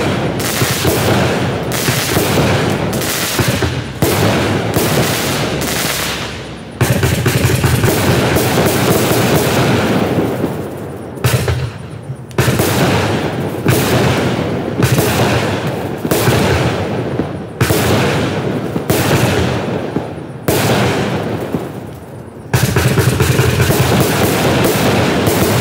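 Black Cat 'Gunfighters From Hell' 49-shot consumer fireworks cake firing: rapid strings of shots launching and bursting, like machine-gun fire, broken by a few short pauses between volleys.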